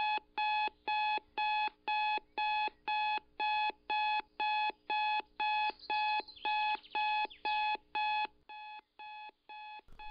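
Digital alarm clock beeping, about two beeps a second. The last few beeps are quieter.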